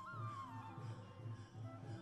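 Quiet background film score: a single held high melodic note that bends up and then slides down within the first second, over a faint soft low pulse.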